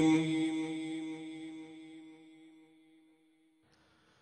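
A sustained low drone, one steady pitch with rich overtones, fading out over the first two and a half seconds, with the last faint trace dying away near the end; then near silence.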